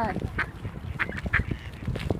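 Mallard ducks quacking a few short times.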